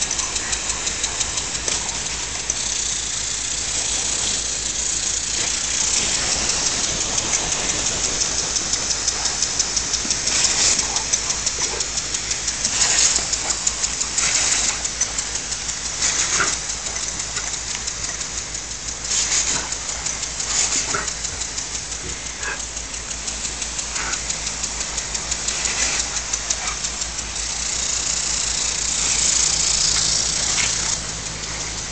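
Lawn sprinkler spraying water: a steady hiss with a rapid, even pulsing, and a few brief louder splashes as the dog bites into the spray.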